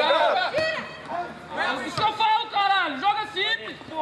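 Speech only: voices talking and calling out, with no other sound standing out.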